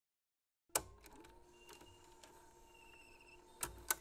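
Old CRT television and VCR starting tape playback: a sharp click just under a second in, then a faint electrical hum with thin whines and small mechanical clicks, and two more sharp clicks near the end.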